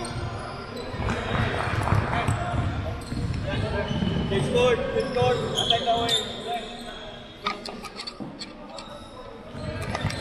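Basketballs bouncing on a hardwood court, with people's voices chattering in the background; sharp bounces stand out near the end.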